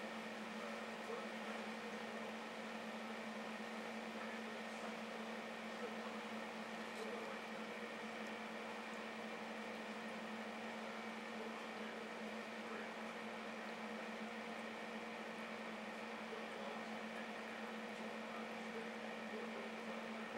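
Steady electrical hum with a low drone and a faint hiss, unchanging throughout: the background noise of running equipment.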